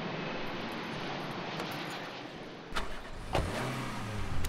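City street traffic noise. Near the end come two sharp knocks a moment apart, and then a low hum starts up.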